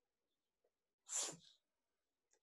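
A single short, breathy burst from a person about a second in, in an otherwise quiet room.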